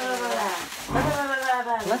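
Two long, drawn-out vocal sounds with sliding, mostly falling pitch, each about a second long, without clear words.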